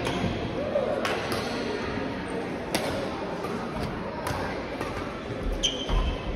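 Badminton rally: sharp clicks of rackets striking the shuttlecock, roughly one every second or so, with a brief squeak near the end.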